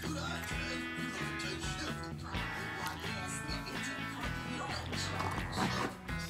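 Background music with a steady, repeating bass line.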